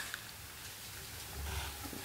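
Quiet room tone with a steady low hum, a little louder near the end.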